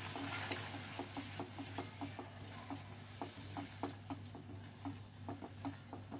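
A silicone spatula stirring paneer cubes through a thick, creamy gravy simmering in a nonstick pan, with light sizzling and soft wet clicks about twice a second as the spatula moves.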